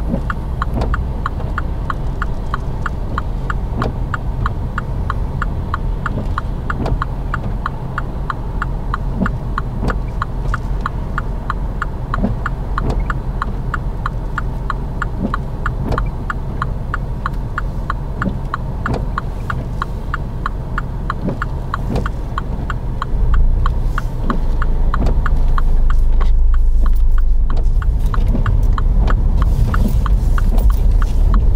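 A car's turn indicator ticking at an even pace, heard from inside the cabin over the low hum of the engine idling with the car stationary. In the last few seconds the engine and road noise rise as the car pulls away.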